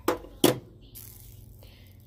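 Two sharp knocks about half a second apart, the second louder, followed by a brief faint hiss.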